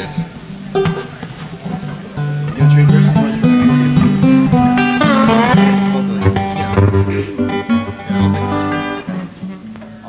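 Acoustic string band instruments, guitar, upright bass and dobro among them, playing loose notes and chords between songs. It gets louder from about two and a half seconds in and eases off near the end.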